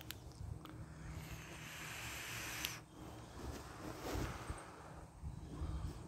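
A drag on a vape pod: a steady airy hiss of breath drawn through the device for about two seconds, cutting off sharply, then a softer breath out.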